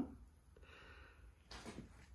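Quiet room with a faint breath about halfway through and a short, sharp breath in near the end.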